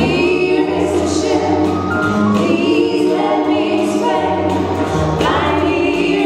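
A female vocal trio singing together into microphones, backed by a live dance band with a walking double bass underneath.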